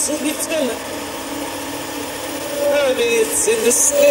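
Constant static hiss with garbled, wavering voice-like sounds that form no words: speech played in reverse from a phone app, mixed with a spirit-box radio's static. The high hiss grows louder near the end.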